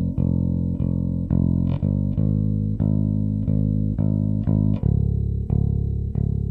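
Electric bass guitar played fingerstyle over a backing track: a bass line of sustained, evenly spaced notes, about two a second, moving down to a lower note about five seconds in.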